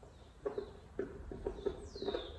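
Marker pen writing on a whiteboard: a quick run of short scratchy strokes with faint high squeaks, ending in a longer falling squeak.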